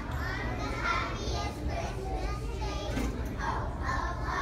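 A group of young children singing a Christmas song together, their voices uneven, over a steady low hum.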